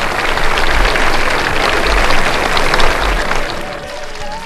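A large crowd applauding, a dense clatter of many hands that thins out toward the end, over background music with a low beat thudding about once a second.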